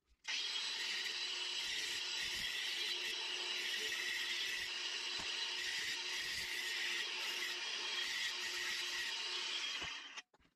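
Cordless angle grinder running steadily with a thin abrasive cut-off disc, cutting through a flat steel bar. It starts about a third of a second in and cuts off abruptly just before the end.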